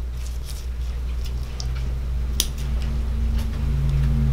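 Small scissors snipping into the leathery shell of a ball python egg: a few light snips, the sharpest about halfway through. A steady low hum runs underneath.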